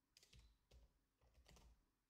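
Near silence with a few faint computer keyboard keystrokes.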